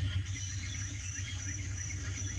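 Tropical rainforest ambience from a documentary soundtrack: a steady high insect trill with faint short chirps repeating, over a low steady hum.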